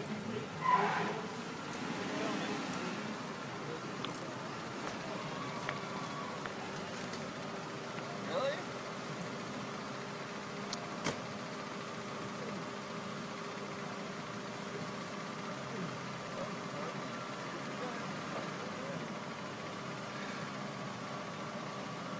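Steady hum of idling vehicles with faint indistinct voices, and a sharp knock about five seconds in.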